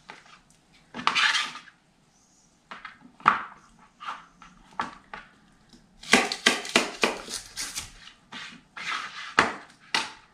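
Chef's knife cutting celery stalks on a plastic cutting board: a few separate cuts and a short slicing scrape early, then rapid chopping from about six seconds in, about five sharp knife strikes a second on the board.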